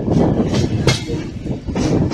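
Passenger train running at speed: a loud rolling rumble of steel wheels on the rails, with a few sharp clacks over the rail joints.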